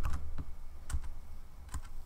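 A handful of separate computer keyboard key clicks, spaced unevenly, over a low steady hum.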